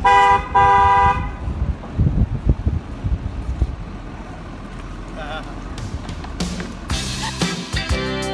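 A vehicle horn honking twice in quick succession, a short toot then a longer one of about a second. Music with a strummed guitar starts near the end.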